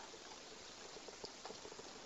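Very quiet room tone: a faint steady hiss with a few tiny clicks.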